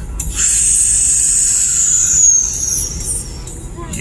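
Car cabin noise while driving, a steady low rumble of road and engine, with a thin high-pitched tone that holds for about two seconds and sags slightly in pitch before fading.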